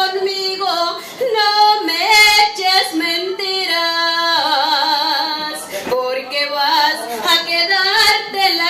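A woman singing a song solo into a microphone, in phrases with short breaths between them, holding one long note with vibrato about halfway through.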